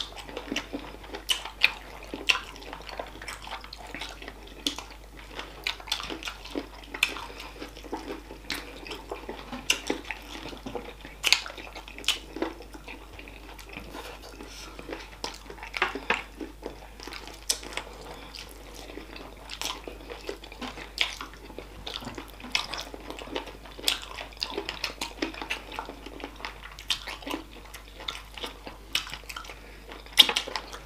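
Two people eating saucy chicken feet with their hands, close-miked: wet chewing, sucking and lip-smacking with irregular sharp clicks.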